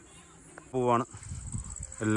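Insects chirring steadily at a high pitch, with a man's single short vocal sound about a second in, followed by low rumbling.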